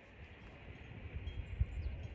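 Wind buffeting the microphone outdoors, a gusting low rumble that grows stronger about a second in, with faint high chime-like tinkling in the background.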